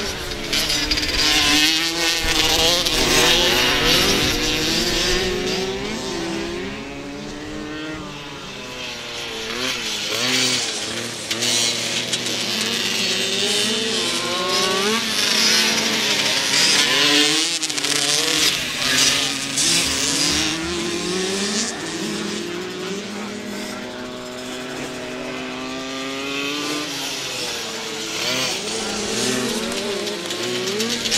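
Several small 65 cc two-stroke youth motocross bikes racing together, their engines overlapping as they rev up and drop back again and again through the corners and straights.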